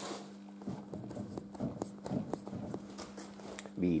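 Tractor front wheel rocked by hand on its hub, knocking back and forth a dozen or so times at an uneven pace: play of about five millimetres in the front wheel bearings, which need tightening.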